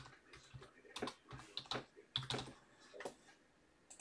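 Computer keyboard being typed on: a faint, irregular run of keystroke clicks as a name is entered.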